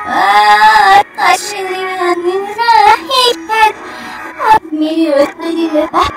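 A high-pitched voice played backwards, heard as garbled sing-song with pitch gliding up and down. Several notes swell and then cut off abruptly.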